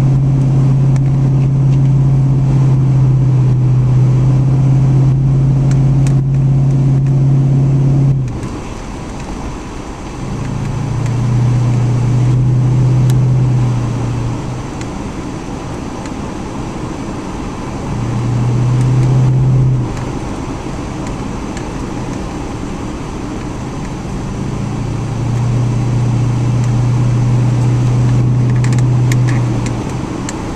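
Car engine and exhaust droning steadily while driving, heard from inside the cabin over tyre and wind noise. The drone drops away abruptly about eight seconds in, then comes back in three stretches, the last running to the end.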